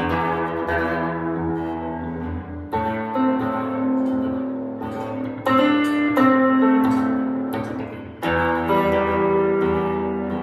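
Clean Stratocaster-style electric guitar played fingerstyle, the thumb picking steady quarter notes on the low E and its octave while the open G string rings over them. The bass note changes about every three seconds.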